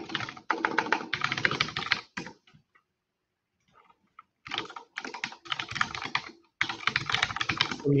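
Rapid typing on a computer keyboard in two runs: about two seconds of keystrokes at the start, then after a short pause a longer run of about three and a half seconds to the end.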